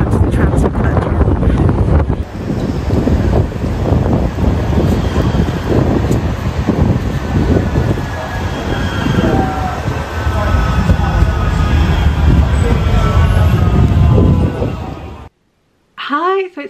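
Manchester Metrolink tram approaching along the platform: a loud, steady rail rumble with faint high squealing tones from the wheels as it slows. Wind buffets the microphone for the first couple of seconds, and the sound cuts off just before the end.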